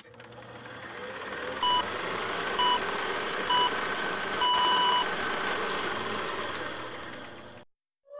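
Electronic beep tones in a countdown pattern: three short pips about a second apart, then one longer beep. They play over a steady background of hiss and low hum that fades in and cuts off abruptly just before the end.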